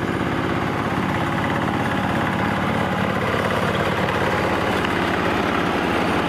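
Hand tractor's single-cylinder engine running steadily with a rapid, even firing beat as it pulls a pagulong soil-crushing roller through tilled soil.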